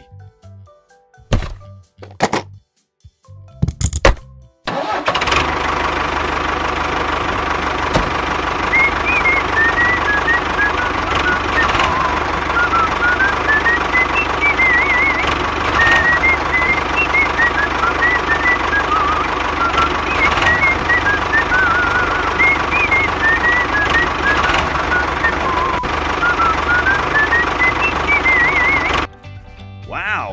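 A few scattered knocks, then from about five seconds in a steady engine-like drone with background music, a wandering melody laid over it, which cuts off just before the end.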